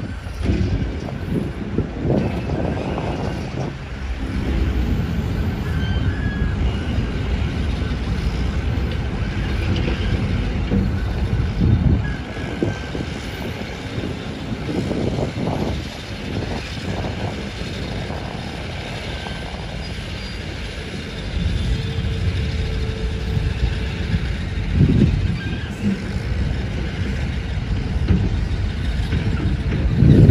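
Outdoor background noise: a steady low rumble that swells several times, with a few faint thin tones partway through.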